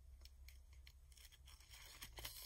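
Near silence with faint rustles and small ticks of ribbon being handled as a needle and thread are pulled through it.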